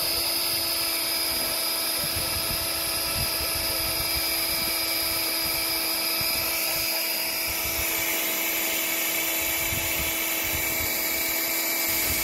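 Cordless drill running steadily at high speed, a cutter bit boring slowly into a black polyethylene irrigation pipe with only light pressure, an even high whine throughout.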